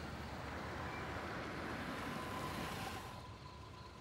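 A car pulling up and slowing to a stop, with steady engine and tyre noise that falls away about three seconds in.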